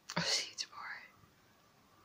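A woman's soft whispered words for about a second, then near silence.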